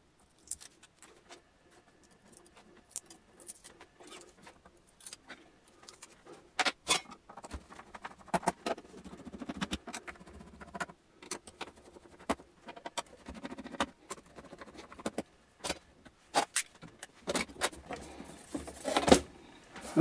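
Scattered, irregular clicks, taps and light scrapes of a small hand tool and screws against the metal case of an EIP 575 microwave frequency counter as its corner stickers and cover screws are taken out. A louder clatter near the end comes as the top cover is lifted off.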